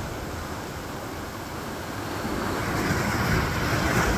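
Sea surf breaking and washing over a rocky shoreline, a wave swelling louder over the last second and a half, with wind rumbling on the microphone.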